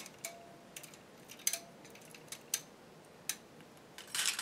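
Steel latch needles clicking lightly as they are lifted out of a circular sock machine's cylinder slots: about seven small metallic ticks, scattered irregularly.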